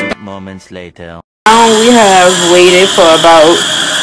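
Tap water running hard and steadily into a stainless steel sink, cutting in suddenly about a second and a half in after a short spoken clip and a moment of silence; a voice talks over the water.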